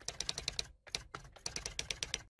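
Keyboard typing sound effect: a quick, irregular run of faint key clicks, with a short pause in the middle.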